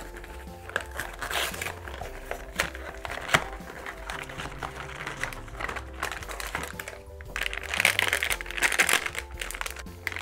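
Paper and cardboard crackling as a cardboard blind box is peeled open and handled, with louder crinkling of a foil bag in the last couple of seconds, all over background music.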